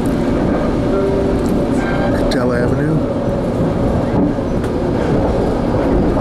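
Inside a moving Metrolink passenger coach: the steady rumble of the train running along the rails, with a few short clicks from the track.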